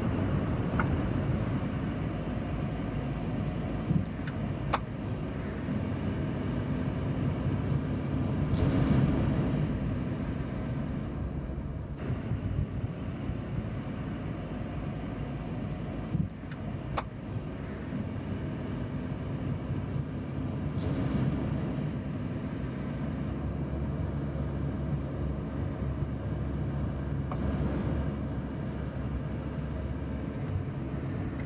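Car engine and tyre noise heard from inside the cabin while driving slowly: a steady low hum, with three brief hissing rushes spread through it.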